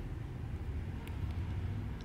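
Room tone: a steady low hum with faint hiss, and one faint click about halfway through.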